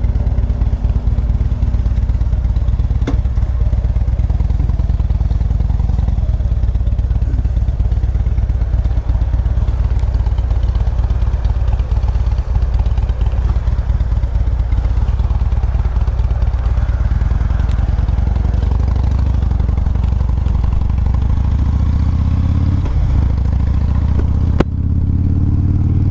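Cruiser motorcycle engine running at low speed as the bike pulls away, the pitch rising over the last few seconds as it speeds up. A single sharp knock near the end.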